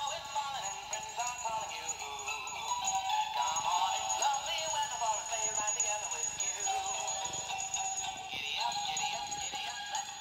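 Animated plush reindeer toy singing a song through its small speaker, a thin sound with hardly any bass, going on steadily.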